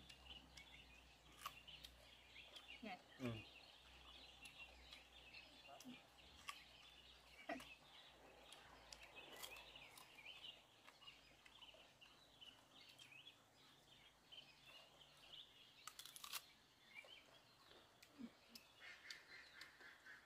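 Faint outdoor birdsong: many small chirps and twitters throughout, with a few soft clicks and a pair of sharper clicks late on.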